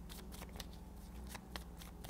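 A deck of tarot cards being shuffled in the hands: faint, quick clicks and slides of the cards.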